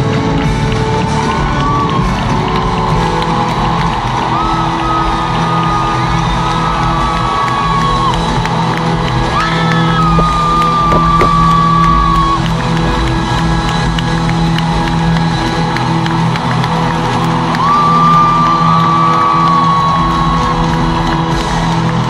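A live band's sustained music with long held high notes, under a large stadium crowd cheering and whooping.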